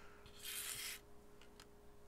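Cardboard trading cards sliding against each other as they are handled: one short rustle about half a second in, then a couple of light ticks.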